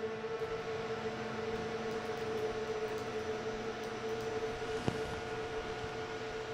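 A steady hum made of several constant tones over a faint hiss, unchanging throughout, with one faint click about five seconds in.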